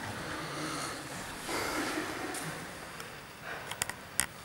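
Two people wrestling on a foam mat: soft rustling and scuffing of cotton uniforms and bodies sliding against the mat, a little louder midway, with a few light taps near the end.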